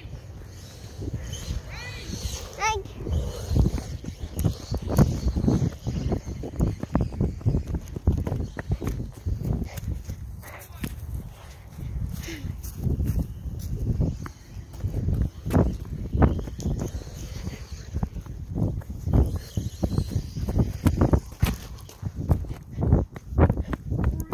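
Footsteps and the bumps and rustle of a handheld phone being carried while walking, an uneven run of knocks. Indistinct voices come in faintly.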